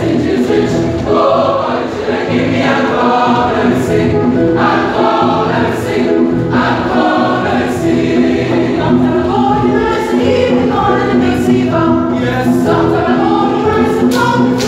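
A large choir of schoolboys singing together in harmony, with several vocal parts sounding at once and no break.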